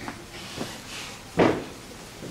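A dull thump about one and a half seconds in, with a couple of lighter knocks before it, over a low room murmur.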